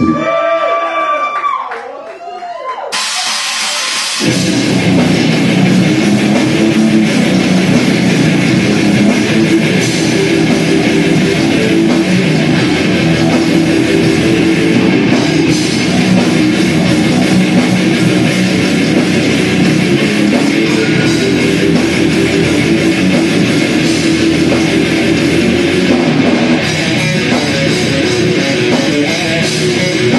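Death metal band playing live: a lone guitar with swooping pitch bends opens, then distorted guitars and drum kit come in about three seconds in and play on loud and dense.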